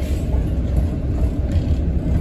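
City transit bus heard from inside the passenger cabin: a steady low drone of engine and road rumble.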